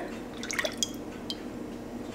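Melted vegan butter poured from a small glass bowl into a large glass mixing bowl: a faint pour with a few soft drips, mostly in the first second and a bit.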